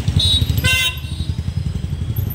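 Motorcycle engines running close by in street traffic, a steady low rumble, with two short vehicle horn toots in the first second.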